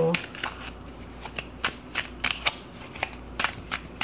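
A deck of oracle cards shuffled by hand: a quick, irregular run of crisp card snaps and clicks, about four or five a second.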